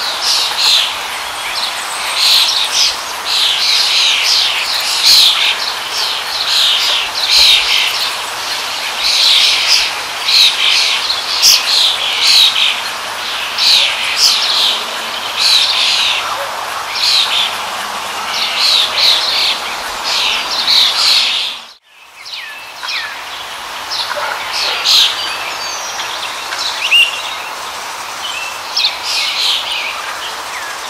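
Many birds chirping rapidly in quick overlapping calls, over a steady rush of running water. About two-thirds of the way through, the sound briefly drops out, then returns with sparser chirps.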